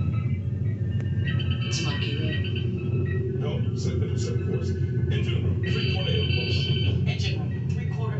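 Played-back sci-fi starship bridge sound: a steady low engine hum with short electronic beeps and chirps sounding on and off over it.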